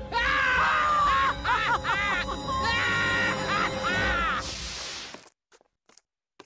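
A cartoon villain's voice laughing loudly in a string of rising and falling ha's, over background music. A short hiss follows near the end, then it goes almost silent.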